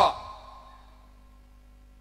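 The last syllable of a man's amplified speech ends at the very start and its reverberation fades within about half a second. The rest is a pause holding only a faint steady hum.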